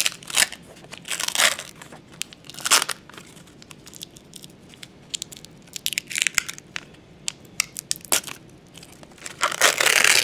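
A plastic FoodSaver vacuum bag being peeled off a cured epoxy-fiberglass part, crinkling and tearing away in irregular bursts, the loudest near the end.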